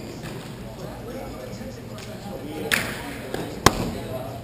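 Players' voices in the background, a short swish about two-thirds of the way in, then one sharp crack near the end: a hockey stick striking the ball in a ball hockey game.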